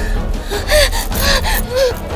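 A person gasping, three short breathy cries in a row, over dramatic background music.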